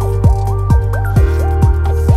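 Electronic background music with a steady kick-drum beat, about two beats a second, under a repeating synth melody.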